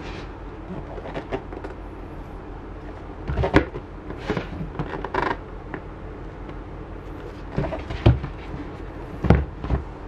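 Cardboard product boxes handled by gloved hands: scattered knocks, rubs and creaks of cardboard, loudest about three and a half, eight and nine seconds in, over a steady low hum.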